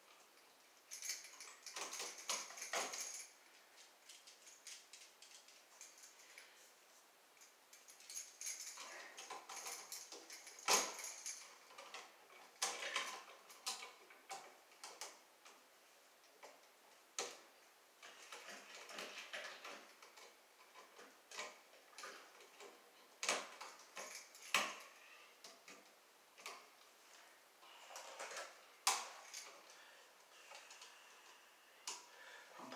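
Light metallic clicks and scrapes of needle-nose pliers bending copper wires onto the screw terminals of a GFI receptacle. They come in irregular clusters, with a few sharper single ticks.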